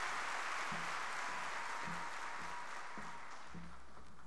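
Large hall audience applauding, a steady dense clapping of many hands that thins slightly toward the end.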